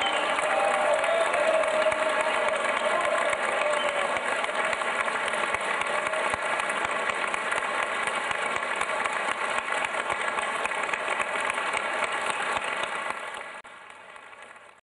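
Audience applauding steadily, with some voices from the crowd among the clapping in the first few seconds; the applause fades out sharply near the end.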